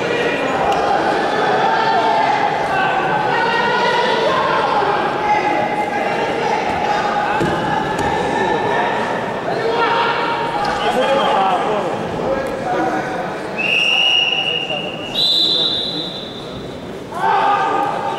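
Men shouting in a large echoing sports hall, coaches and spectators calling out during a combat sambo bout, with a few dull thuds of the fighters on the mat. Near the end two steady high tones sound one after the other, the second higher than the first.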